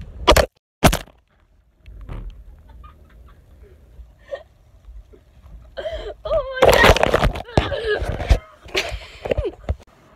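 A phone in a rugged case hits a hard surface after a long drop, two sharp knocks a fraction of a second apart as it lands and bounces. In the second half, voices shout and laugh.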